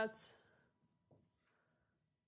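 Whiteboard marker writing on a whiteboard: faint short scratchy strokes of the marker tip, after a single spoken word at the start.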